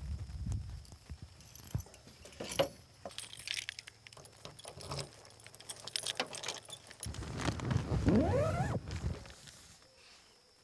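Close fabric rustling and handling noise with scattered small clicks. About seven seconds in comes a louder stretch: a low rumble with a whine-like vocal sound above it that rises steeply in pitch over a second or two.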